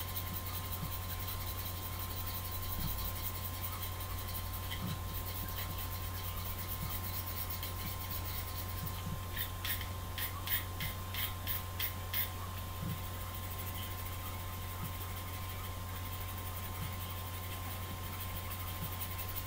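Craft-knife blade scraping along a pencil's graphite lead, with a quick run of about seven sharp scrapes about nine seconds in and fainter scrapes either side, over a steady low hum.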